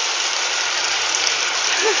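Heavy rain pouring down in a steady, dense hiss, with a short burst of voice near the end.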